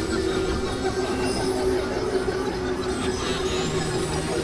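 Dense, noisy experimental drone mix: a steady low hum under a wash of rumbling noise, with faint high whistling tones sliding upward a couple of times.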